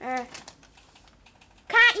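A child's voice: a short grunt at the start, then faint clicking and rustling as a plush toy is pushed through an artificial Christmas tree's branches, then a loud high-pitched cry near the end.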